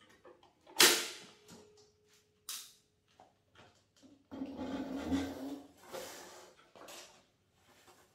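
A sharp metallic clunk, then a few seconds later a rumbling run of about a second and a half as the mini electric motorbike's motor and tyres set it rolling across the concrete floor, followed by lighter knocks.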